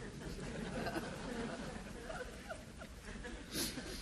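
Soft, scattered chuckling and laughter from a seated audience, with a brief breathy hiss near the end.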